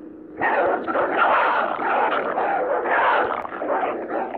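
Several dogs barking and growling at once, a loud continuous clamour that starts about half a second in.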